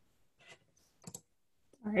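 Two quick, faint clicks close together about a second in, from a computer mouse as a screen share is started, with a woman's voice beginning near the end.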